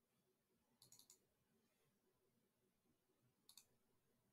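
Faint computer mouse clicks: a quick run of about three clicks about a second in, then a double click near the end that opens a chart tool's settings dialog.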